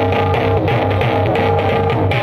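Instrumental interlude of a live qasida band, with sustained melodic notes over a strong bass and a steady beat, and no singing.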